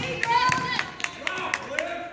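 Basketball game in a gym: a run of sharp, evenly spaced knocks, about three a second, with players' and spectators' voices calling in the background.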